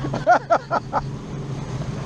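Boat's outboard motor running steadily under wind on the microphone and the rush of the wake, with a few short excited voice sounds in the first second.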